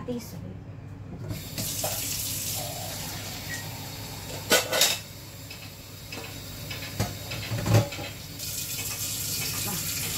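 Water running steadily from a kitchen tap, filling a container, with a few sharp knocks about halfway through and just before the end of the run.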